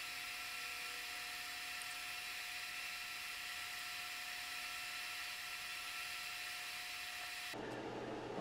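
Quiet, steady hiss with a few faint, steady whining tones under it; no sweep tone can be heard.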